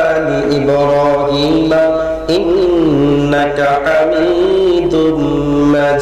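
A man chanting in Arabic into a microphone, in long drawn-out melodic phrases whose held notes bend and waver in pitch.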